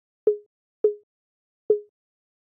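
Sampled TR-808 conga hits playing a sparse drum pattern: three short, pitched hits, each a sharp attack that dies away quickly.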